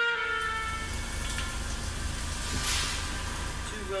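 Soft orchestral music dies away in the first half second. A steady low rumble with a hiss follows, the hiss swelling a little in the middle.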